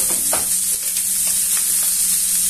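Chicken pieces sizzling as they fry in oil in a pan, while the pan is shaken and the pieces are stirred with metal tongs. A steady low hum runs underneath.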